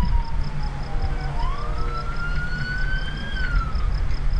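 Emergency vehicle siren wailing in one slow cycle: the pitch dips at first, climbs to a higher tone and rises gently, then falls near the end, over a steady low rumble.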